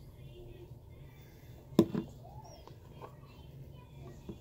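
A sharp click about two seconds in, then a softer second one, from handling a hot sauce bottle and metal spoon, over a low steady hum.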